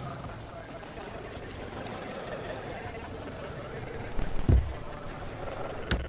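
Unmixed playback of a bar scene's soundtrack: voices and bar ambience under one another, with a deep thump about four and a half seconds in. A sharp click near the end, and the sound cuts off as playback breaks down.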